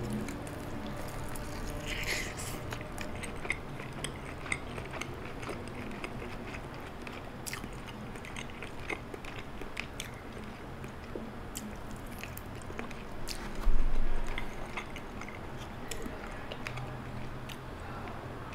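Close chewing of a crispy-battered fried chicken drumstick, with small crisp crunches of the coating scattered throughout. A brief, louder low thump comes about fourteen seconds in.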